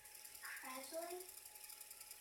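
A short, faint phrase of speech about half a second in, heard from across a room, then quiet room tone.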